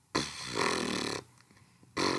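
A person's breathy, rasping vocal noise, one drawn-out breath of about a second, with another starting at the very end.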